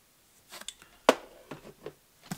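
A small folding utility knife being handled and put down on a workbench mat: a few light clicks and knocks, with one sharp click about a second in.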